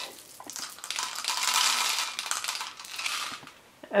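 Plastic pony beads being dropped by the handful into a clear plastic water bottle: a dense clatter of many small clicks as the beads hit the bottle and each other, tailing off near the end.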